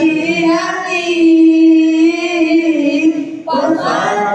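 A man's solo voice chanting a religious recitation in a melodic style. He holds one long note through the middle, then takes a brief break near the end before the chant resumes.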